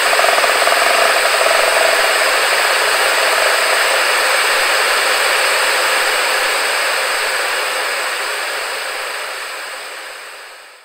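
A loud, steady hiss like static, with a faint wavering tone under it that dies away in the first couple of seconds; the hiss slowly fades over the last few seconds.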